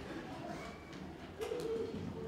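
Quiet concert hall between tunes: faint voices and low murmur, with a short held low tone about one and a half seconds in.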